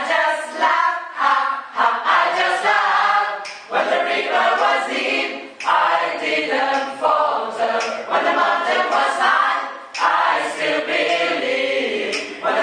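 Mixed gospel choir of men's and women's voices singing without accompaniment, in phrases a couple of seconds long with short breaths between them.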